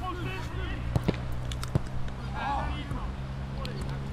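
Live pitch sound from a small-sided football game on artificial turf: faint, distant shouts of players and a few sharp knocks of a ball being kicked, about one to two seconds in, over a steady low hum.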